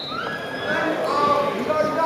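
People shouting drawn-out, high-pitched calls across a sports hall during a wrestling bout, three held calls one after another.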